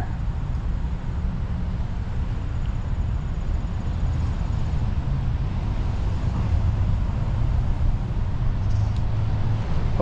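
Steady low rumble of outdoor background noise, swelling slightly about two thirds of the way through.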